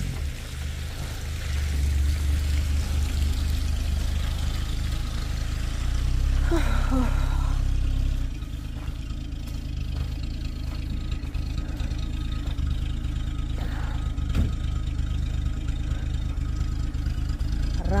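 Rambler American car's engine idling with a steady low exhaust rumble, a little quieter from about eight seconds in.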